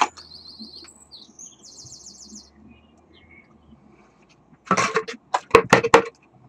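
Small birds chirping in quick high trills during the first couple of seconds. Near the end, handling of a cardboard box: rustling and several sharp knocks.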